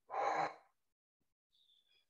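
A person's breathy exhale, like a sigh, lasting about half a second at the start, then near silence.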